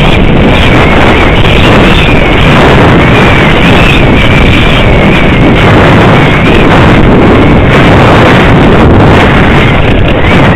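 Wind buffeting a helmet-mounted camera's microphone during a fast mountain-bike descent: a loud, steady rush of noise with a thin, wavering high whistle running through it.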